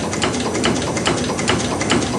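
1918 vintage US Navy compound steam engine running, its cranks and valve gear making a quick, even clatter of clicks.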